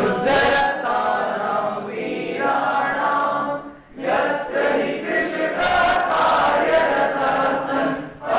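A group of voices chanting together in unison in phrases, with a brief pause about four seconds in.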